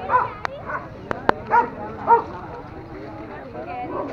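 Dogs barking: a run of short barks in the first half, then quieter voices, with a few sharp clicks among the barks.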